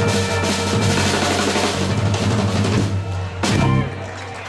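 Live blues band, electric guitars and drum kit, playing the closing bars of an instrumental boogaloo, with a loud final hit about three and a half seconds in, after which the music stops.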